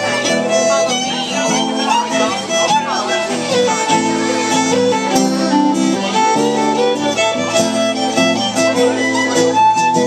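Fiddle playing a melodic lead over a strummed acoustic guitar, an instrumental passage with no singing.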